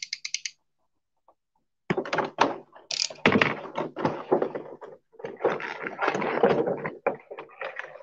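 Clear plastic packaging being handled and pulled apart: a quick run of crisp clicks, a short pause, then about six seconds of dense crinkling and clacking of a plastic blister tray and its wrapping.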